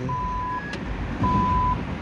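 An ATM beeping twice in a steady, evenly spaced series, each beep about half a second long. These are the machine's prompt to take back the card after the transaction is cancelled. A brief higher blip and a click fall between the two beeps.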